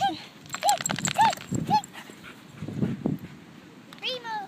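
Dog giving four short, high whining yelps in quick succession in the first two seconds, then the scraping of its paws digging in loose sand.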